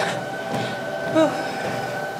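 Steady mechanical hum with a high whine from a running treadmill motor.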